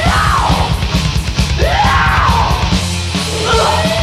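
Crust punk and thrash metal demo recording: distorted electric guitars, bass and fast drums, with a yelled voice over the top. The fast beat gives way to held chords about three seconds in.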